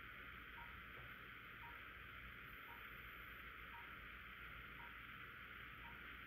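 Near silence: room tone with a steady faint hiss and a faint short tick about once a second.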